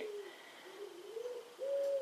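Faint cooing of a dove: a few low, soft notes that rise and fall, the longest and steadiest one near the end.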